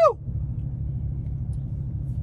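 Steady low rumble of a vehicle running, heard from inside the cab.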